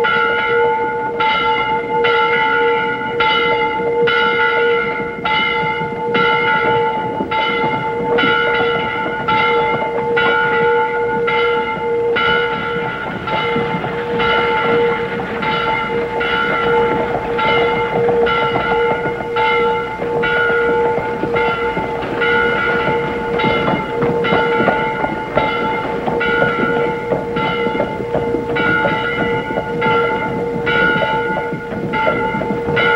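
A large bell in a rooftop bell tower ringing steadily, struck about once a second, its deep hum carrying on between strokes. A busy, noisy bed sits underneath.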